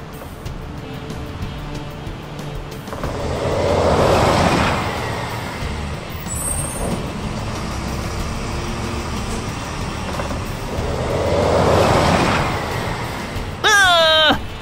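Cartoon truck engine sound effect running with a steady rumble over background music. It swells up and fades away twice, about four seconds in and again near the end.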